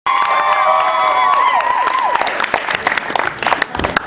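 An audience cheering and applauding: several held whoops that fall away in pitch over the first two seconds, then clapping.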